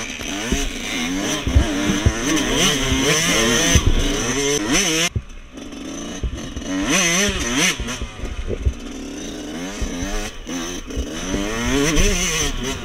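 Dirt bike engine heard from the rider's seat, revving up and down through the gears over a bumpy trail. About five seconds in, the throttle is shut off and the engine drops away briefly before it picks up again. Low knocks from the bike hitting bumps come through along the way.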